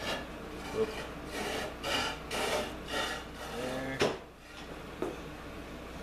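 A thin wooden stick scraping along a wooden strip in short repeated strokes, about two a second, spreading two-part epoxy. The scraping stops about four seconds in with a sharp click.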